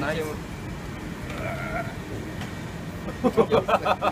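A man laughing in a quick run of short ha-ha bursts near the end, the loudest sound here, over a steady background hum.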